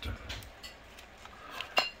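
Small metal clicks as an adjustable swivel magnet is twisted and handled, with one sharp metallic clink near the end.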